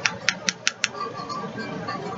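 Five quick, sharp taps or clicks of a small hard object, about five a second, all within the first second, followed by a faint low background.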